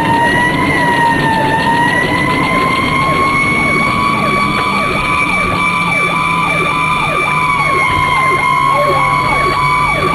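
Fire squad vehicle's siren wailing, holding a high pitch that drifts slowly up and down. From about four seconds in, a faster yelping siren cycles over it about twice a second.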